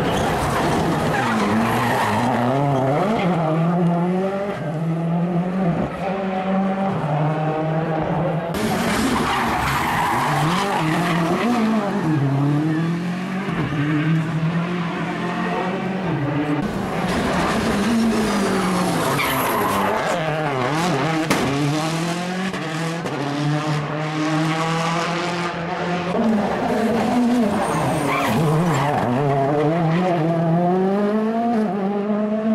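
Rally car engine revving hard through the stage, its pitch climbing and dropping again and again with gear changes and lifts off the throttle.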